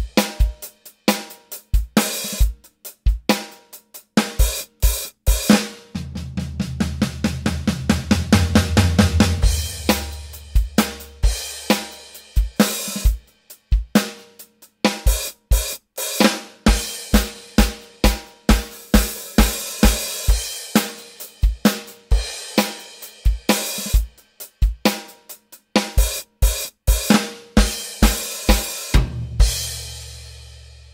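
Electronic drum kit played at full tempo in a driving rock beat: steady bass drum and snare with hi-hat and cymbal crashes. About six seconds in comes a fast run of low, ringing drum hits that rings on for a few seconds, and the low ringing hits return near the end.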